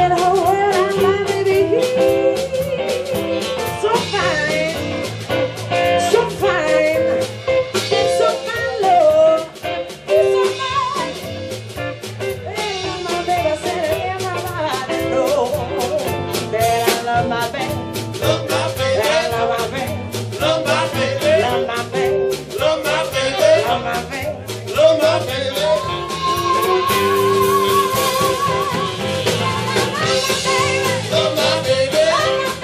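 Live band playing, a woman singing lead over electric bass, drums, guitar and saxophone.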